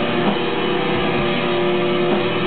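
Rock band playing live: held electric guitar notes over a drum kit, with a few low kick drum hits.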